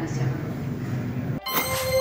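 Room sound of a committee hearing with faint speech, cut off suddenly about 1.4 seconds in. A whoosh follows, opening an electronic outro jingle with bright held tones.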